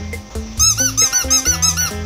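Strummed-guitar background music with a quick run of about seven high squeaks in the middle, each rising and then falling in pitch.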